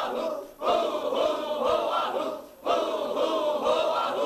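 Zikr chanting by a group of men in unison, one short devotional phrase repeated about every two seconds with a brief break for breath between repetitions.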